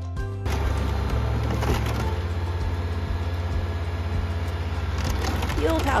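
Caterpillar crawler loader's diesel engine running as its bucket pushes into an old wooden house, the timber boards cracking and splintering. It starts about half a second in, under background music.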